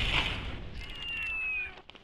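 Explosion sound effect from an action-movie style video clip fading out over the first half second, followed by a thin high whine that falls slightly in pitch for about a second.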